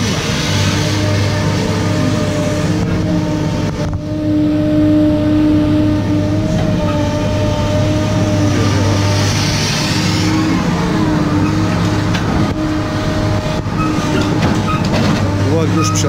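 Caterpillar M318C wheeled excavator's diesel engine running at a steady idle, an even low hum with no revving.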